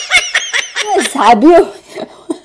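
Rapid, high-pitched giggling in quick repeated bursts, then a woman's voice about a second in.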